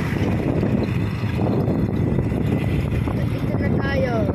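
Wind buffeting the microphone over the low, steady rumble of a moving vehicle on the road.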